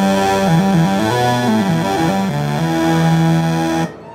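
Moog Sub Phatty analog monophonic synthesizer playing a thick, bright low line with its sub-oscillator adding a square wave an octave below oscillator one. It holds a note, plays a quick run of changing notes, then holds another note that cuts off suddenly just before the end.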